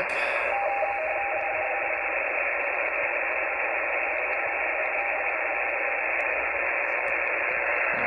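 Shortwave receiver hiss from the Xiegu G90 HF transceiver's speaker on the 20-metre band, with a faint RTTY (radio teletype) signal keying between its two tones, mark and space, about 170 Hz apart. The signal starts about half a second in and fades out after about six seconds.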